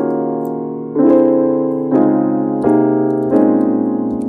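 FL Studio's FL Keys virtual piano playing back a chord progression built in Scaler. Four chords are struck at roughly one-second intervals, each ringing and fading before the next.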